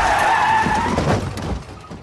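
Car tyres screeching in a long skid, followed about a second in by the knocks of a crash, after which the sound falls away.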